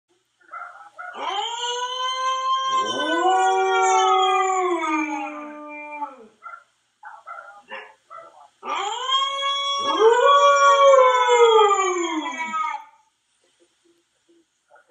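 Husky howling: two long howls, each sliding down in pitch as it ends, with a few short whines between them. A second, lower howl overlaps the first one a couple of seconds in.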